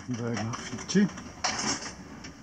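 Indistinct, low voices with a few faint clicks, and a short hiss about one and a half seconds in.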